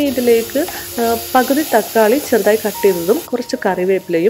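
A woman talking in Malayalam over a steady sizzle of sliced onions and tomatoes frying in a pan. The sizzle cuts off about three seconds in.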